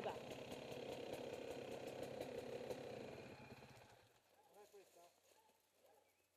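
Dirt bike engine idling steadily, then dying away about four seconds in, leaving near quiet.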